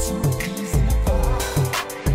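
Intro music: a hip hop beat with deep bass hits, quick hi-hat ticks and a held synth chord.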